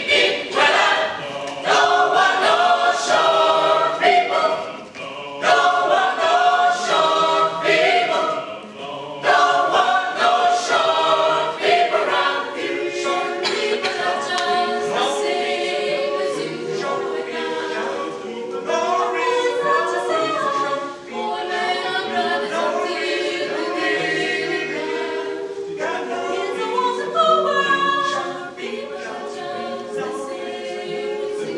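Mixed-voice chamber choir singing a cappella in close harmony. The phrases are short and clipped at first, with brief breaks, then move into longer held chords.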